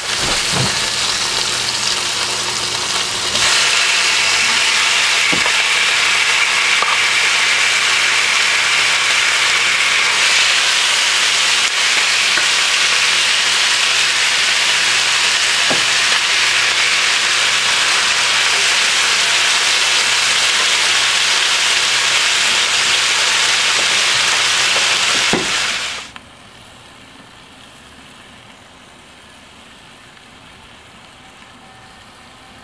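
Onion, tomato and lamb pieces sizzling loudly in hot oil and rendered lamb fat in a cast iron skillet, with a few light clicks. The sizzle gets louder a few seconds in and stops abruptly near the end, leaving only a quieter steady rush.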